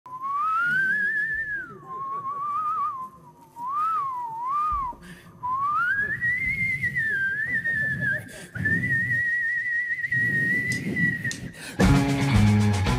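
A whistled melody played into a microphone: a single clear tone in short rising and falling phrases, ending in a long high held note with a slight waver.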